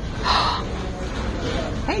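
A short breathy gasp, a burst of breath without voice, a quarter to half a second in.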